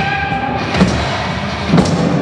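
A loud live experimental rock band playing a dense, sustained wall of sound. Drum hits land about once a second, and a held high note fades out about half a second in.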